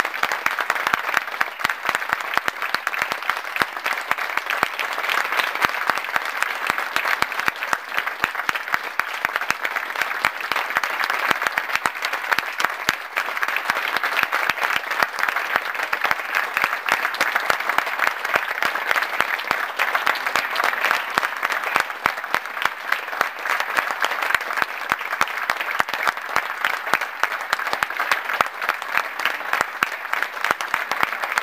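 Audience applauding steadily, many hands clapping at once.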